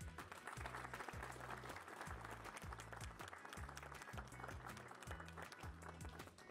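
Audience applause breaks out at the start and continues over background music with a steady, repeating bass beat.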